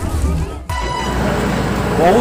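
A man's voice, then roadside crowd and traffic noise with a steady low rumble. A short vehicle horn toot sounds just under a second in.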